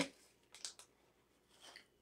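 Small plastic snack packet being handled and opened, two short faint crinkles: one about half a second in and a softer one near the end.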